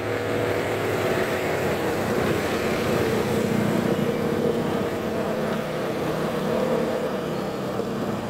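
A medium truck's diesel engine running steadily as the truck passes close by and pulls away, with car traffic following behind it.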